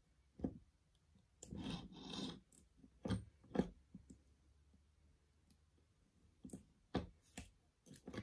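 Faint scattered clicks and light taps of a plastic model locomotive chassis and soldering iron being handled on a wooden bench, with a brief rustle about a second and a half in.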